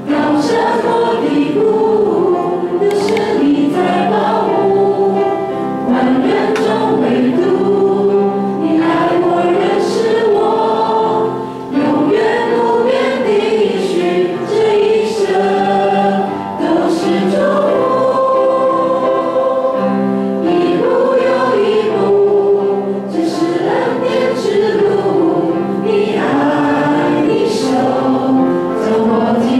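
A small worship team of mixed women's and a man's voices singing a hymn in Taiwanese through microphones, with piano accompaniment.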